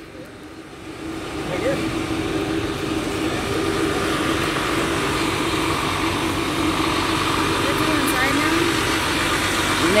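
Parked coach buses idling: a steady engine hum that swells about a second in and then holds.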